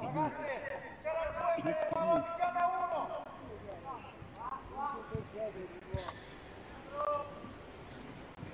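Footballers' shouts carrying across the pitch during play: a long drawn-out call in the first few seconds, then shorter calls later, with a single sharp knock about six seconds in.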